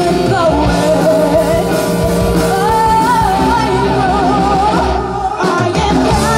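Live rock band playing: a female lead vocal sung over electric guitars, bass and drums. The band drops out briefly near the end, then comes back in.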